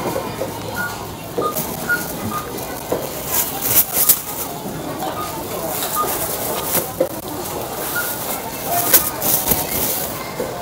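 Checkout barcode scanner beeping as groceries are scanned, short high beeps every second or two, over plastic shopping bags rustling and being handled.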